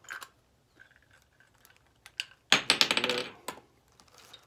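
Plastic airbox of a protein skimmer being unscrewed and handled: a few faint clicks, then a loud rattling clatter of plastic on a hard surface about two and a half seconds in, lasting about a second.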